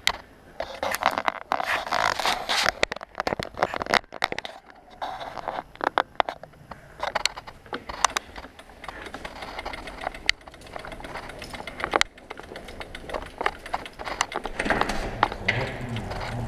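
Close handling noise on an action camera: irregular scrapes, rustles and sharp clicks. A low rumble rises near the end.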